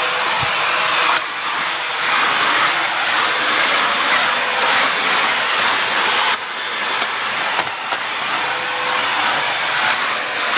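Bissell 3-in-1 stick vacuum running steadily: a rushing airflow with a faint steady whine, which dips slightly about a second in and again around six seconds in. A few faint clicks come near the seven-to-eight-second mark.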